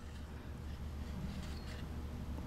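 Quiet room tone with a low steady hum and no distinct sound events.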